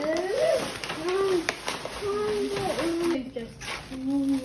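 Wordless voice sounds, drawn-out sliding 'ooh' and 'uh' tones, over light rustling of tissue paper being pulled from a gift bag.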